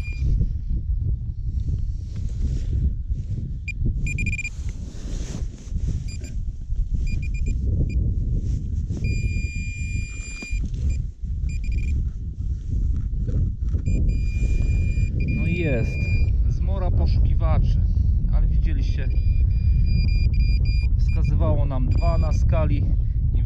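Minelab X-Terra Pro metal detector sounding a steady high beep in repeated stretches, the longest about three seconds, over a heavy low rumble on the microphone.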